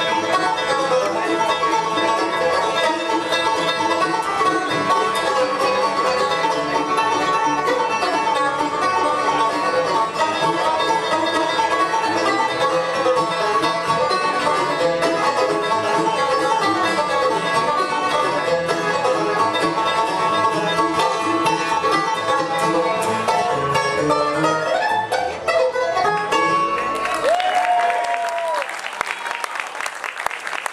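A bluegrass band plays an instrumental live, with a five-string banjo leading over acoustic guitar, mandolin and upright bass. The tune winds down a few seconds before the end.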